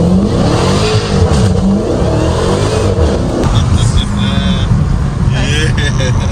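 Dodge Challenger Hellcat Redeye's supercharged V8 revving hard under full-throttle acceleration, heard from inside the cabin. The pitch climbs steeply, drops and climbs again several times over the first three seconds, then runs steadier at speed.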